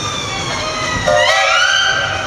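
Steam locomotive whistle. A long blast slowly sags in pitch, then about a second in a fresh blast rises in pitch and holds, with a brief lower tone under its start.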